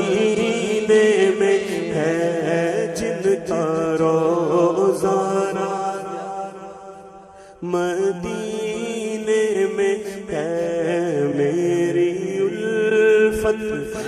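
A man singing a naat, an Urdu devotional song, in long wavering held notes over a steady low drone. The singing fades down a little past the middle and comes back strongly about seven and a half seconds in.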